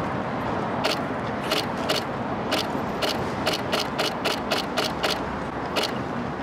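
Camera shutters clicking, some single shots and some quick runs of several, over steady background noise.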